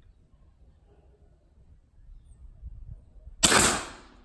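A single shot from a Sumatra 500cc pre-charged air rifle set to maximum pressure, a sharp report about three and a half seconds in that fades within half a second.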